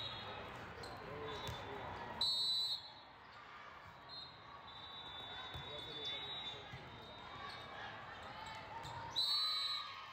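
Two loud, short referee's whistle blasts, one about two seconds in and one near the end, over the steady chatter of a large, echoing sports hall. Fainter whistles from other courts and the thuds of volleyballs being hit come through in between.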